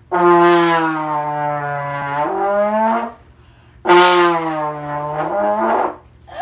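Trombone played in two long, loud low notes. Each note slides down a little, then steps up to a higher pitch shortly before it stops, and the second note begins about four seconds in.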